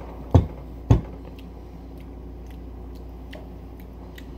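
Two dull thumps about half a second apart in the first second, then a few faint clicks over a steady low hum.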